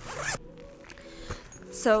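Zipper on a padded lighting-kit backpack pulled open in one quick stroke, about a third of a second long, right at the start.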